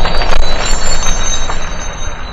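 Logo-reveal sound effect: a loud rushing, clattering noise with sharp clicks and high metallic ringing tones, fading away over the second half.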